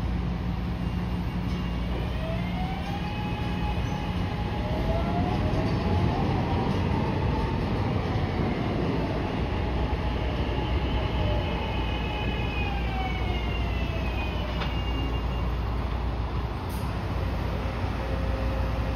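SEPTA Market-Frankford Line subway trains in the station tunnel: a steady low rumble, with an electric motor whine that rises in pitch about two seconds in as a train pulls out. The whine holds level, then falls in pitch near the end as a train comes in and slows.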